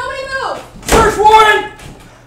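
A single sharp slam about a second in, amid shouted voices.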